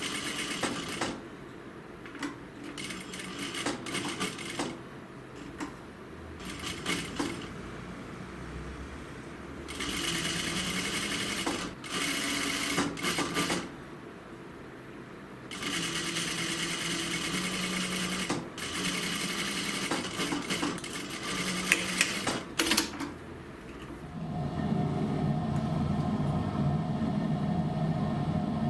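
Juki industrial lockstitch sewing machine stitching a fabric pocket flap in repeated runs, from a quick burst of a second up to about four seconds, stopping in between as the fabric is guided and turned. Near the end a steadier hum takes over.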